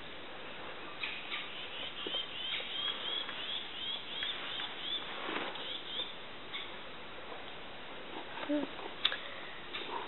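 A bird calling in a quick series of high chirps, about two or three a second, fading out after a few seconds, over faint outdoor hiss.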